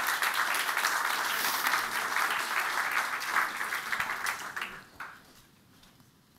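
Audience applauding, the clapping dying away about five seconds in.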